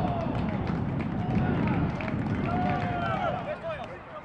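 Shouts and calls from football players and spectators, heard through pitch-side match audio over a steady low rumble of outdoor noise.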